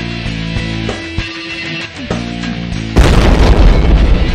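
Rock music with guitar plays, then about three seconds in a loud boom cuts in suddenly over it and keeps rumbling on.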